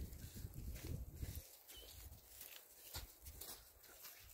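Faint footsteps of people and a llama walking on dry dirt, with a low rumble for the first second and a half and a few soft scuffs after.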